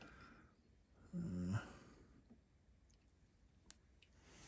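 A short, low, wordless hum from a man, lasting about half a second and starting about a second in, over quiet shop room tone. There is a single faint click near the end.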